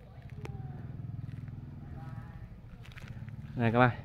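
A low, steady engine-like hum, with a single faint click about half a second in and a brief spoken word near the end.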